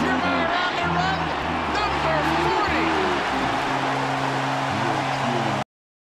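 Ballpark crowd cheering a home run, with voices and music mixed in. Steady held notes come in about halfway, and the sound cuts off suddenly near the end.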